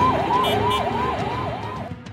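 Ambulance siren in a fast yelp, rising and falling about three times a second, then cutting off just before the end.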